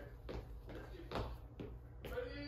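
Burpees on a bare floor: about four short thuds and puffs in two seconds as feet land from the jumps, with hard breathing, over a steady low hum.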